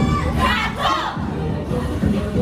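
K-pop dance track playing, with a burst of several voices shouting together about half a second in.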